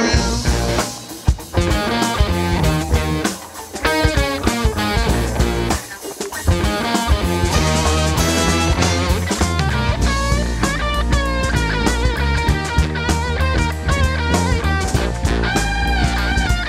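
Funk band playing live in an instrumental section: electric guitar lead over sousaphone bass, drum kit and horns. The band drops out briefly three times in the first six seconds, then plays on without a break.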